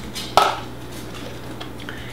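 A single clink against a glass mixing bowl about a third of a second in, ringing briefly, as flour is added.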